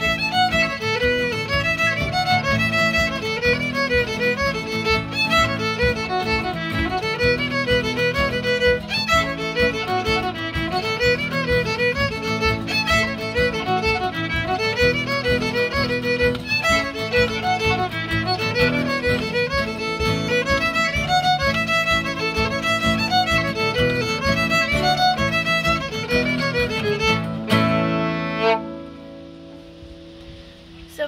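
Fiddle playing a lively tune over acoustic guitar chords that keep a steady beat. Near the end the tune stops on a final chord that rings briefly and fades.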